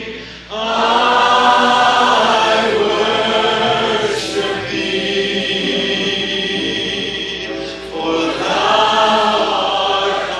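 A church worship choir singing a gospel song in a live recording. The voices break briefly between phrases about half a second in and again just before eight seconds.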